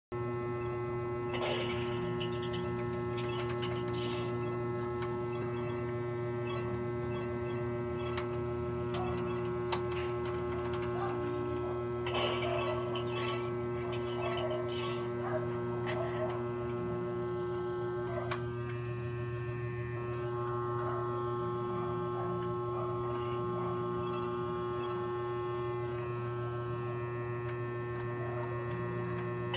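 Steady electrical mains hum made of several even tones, with faint clicks and brief background sounds now and then.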